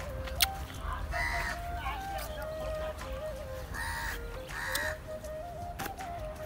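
Domestic fowl calling: three short calls, about a second, four and nearly five seconds in, over a faint steady tone.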